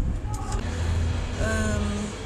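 A motor vehicle engine running with a steady low hum, joined near the end by a held pitched tone.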